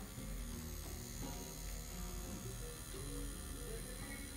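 Background music over the steady low hum of an Axys Fehu rotary tattoo machine running as it works permanent eyeliner into the eyelid.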